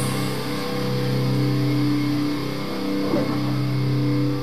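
Distorted electric guitar holding long sustained notes, the pitch shifting every second or so.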